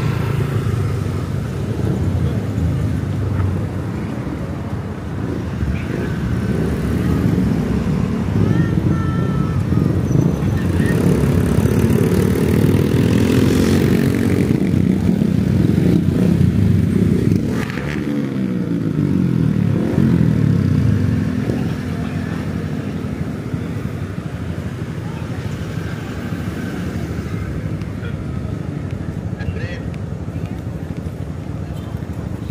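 Motorcycles and cars pulling away and passing close by at a street crossing, their engines running with pitch rising and falling. The traffic is loudest in the middle, then settles to a steadier rumble.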